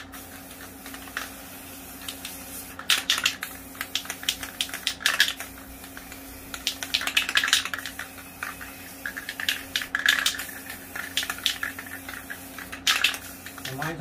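Aerosol spray-paint can used in short bursts to mist dark paint over a painting. Clusters of quick clicking rattles, from the can's mixing ball, come about every one to two seconds, with brief hisses of spray.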